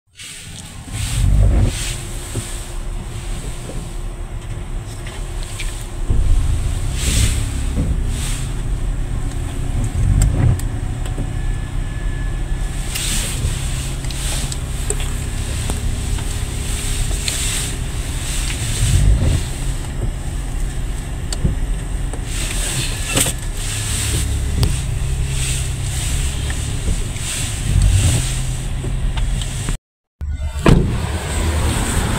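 Inside an SUV's cabin while it reverses: a steady low engine and road rumble, with scattered short knocks and clicks.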